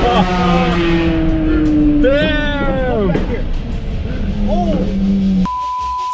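A car driving, heard from inside the cabin, its engine note slowly falling, mixed with music and voices. About five and a half seconds in, everything drops out under a single steady beep.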